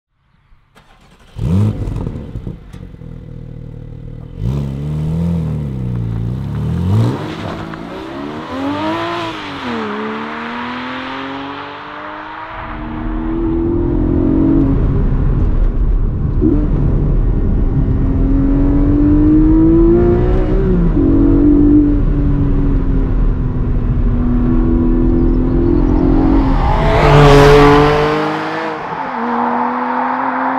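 Porsche 718 Cayman GTS 4.0's naturally aspirated 4.0-litre flat-six: a sudden loud start-up flare about a second and a half in, revs rising and falling, then pulling hard with the pitch climbing and dropping at each gear change. It swells to a loud pass-by near the end.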